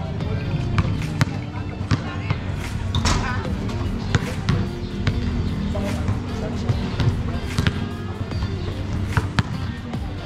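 Basketballs bouncing on a concrete court during a three-point shooting round: sharp, irregular impacts about two a second, over crowd chatter and background music.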